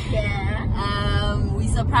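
Steady low road rumble inside a moving car's cabin, with a woman laughing and one drawn-out laughing cry just before the middle.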